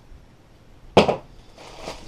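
A single sharp knock about a second in: an empty roll of packing tape set down on a table top.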